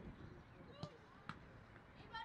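A football kicked twice on an artificial pitch: two sharp, short thuds about half a second apart, over faint distant players' voices.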